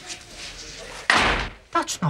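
A glass-panelled office door slammed shut about a second in: one sharp bang that dies away quickly.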